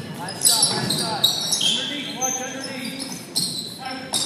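Basketball game play on a hardwood gym floor: a ball bouncing and sneakers squeaking in short high chirps, echoing in the hall, with players' voices calling out.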